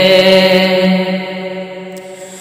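A man's voice holds one long, steady sung note at the end of a line of an Urdu devotional nazm. The note fades away in the second half.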